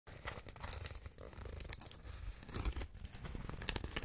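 Fingernails scratching on a piece of corrugated cardboard, close-miked for binaural ASMR, with some quick taps. The strokes are short and irregular.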